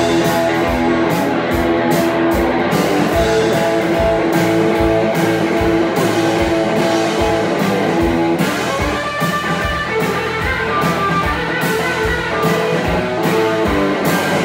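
Live blues band playing an instrumental break with no vocals: electric guitar over bass guitar and a steady drum beat.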